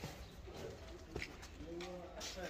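Faint cooing of a pigeon-type bird over a quiet background, with a single soft click about a second in.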